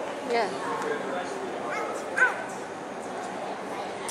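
Indistinct voices and murmur in a large hall, with one short high-pitched voice sound, a yelp or squeal, about two seconds in.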